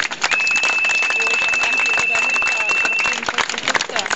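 A crowd clapping, dense and steady, with a steady high-pitched whistle of microphone feedback through the PA that starts just after the beginning and cuts off about three seconds in.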